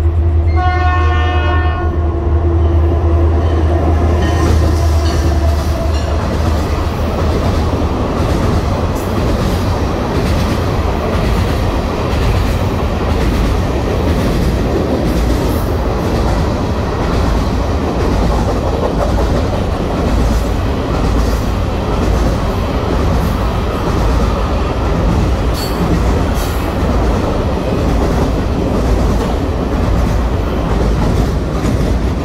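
A train horn sounds once, briefly, about a second in, over a low engine hum. Then a Florida East Coast Railway work train's ballast hopper cars roll across a steel girder bridge overhead, with a loud, steady rumble and clacking of wheels over the rail joints.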